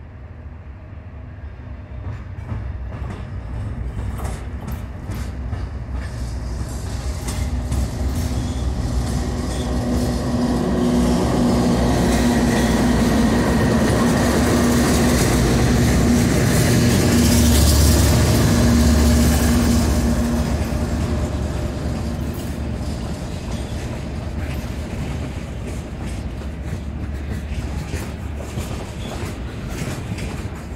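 Diesel freight train led by a CSX locomotive with a BNSF unit behind it, approaching and passing close by. The locomotives' engines grow steadily louder and peak about halfway through as the lead units go past, then give way to the rumble and clatter of freight cars rolling by.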